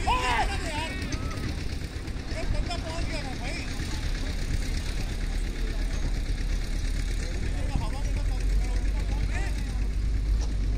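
Distant voices of cricket players calling out across the field, heard in short scattered bursts over a steady low rumble.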